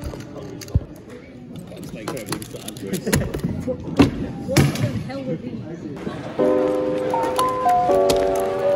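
Quick clicks of a Pyraminx being turned and a Speed Stacks timer being slapped, then knocks and excited voices. Background music with steady notes comes in about three-quarters of the way through.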